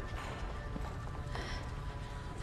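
Dark film score, a low rumbling drone with faint high held tones, and a short sharp breath from a drugged woman about one and a half seconds in.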